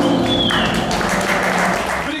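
Audience applauding as the song's last notes fade away in the first half second.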